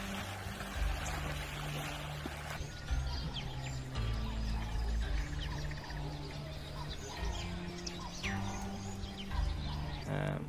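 Background music carried by a low bass line, with short bird chirps scattered over it.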